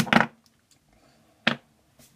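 Two short, sharp knocks or clicks: a louder cluster right at the start and a single crisp one about one and a half seconds in. They fit handling noise as things are picked up or set down.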